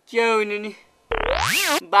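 A cartoon-style comic sound effect: a boing-like glide lasting under a second that wobbles and then sweeps steeply upward, about a second in, after a short held vocal sound.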